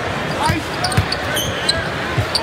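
Basketball being dribbled on a hardwood court, a few bounces, over the steady murmur of an arena crowd, with brief high squeaks.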